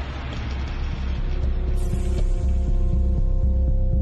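Background music: a low, throbbing bass pulse about twice a second under steady held notes that come in partway through.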